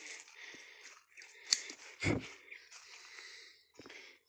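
Crinkling of a plastic bag and rustling coffee leaves, with one sharp snip of pruning shears about a second and a half in, the loudest sound, and a short breathy puff just after.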